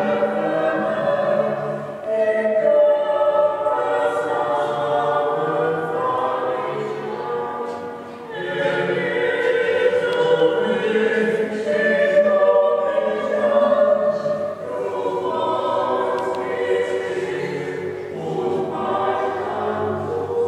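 Choral music: a choir singing in long held phrases, with a short drop in loudness about eight seconds in.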